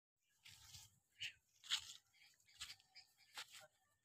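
Footsteps crunching on dry grass and fallen leaves: about five faint, unevenly spaced steps.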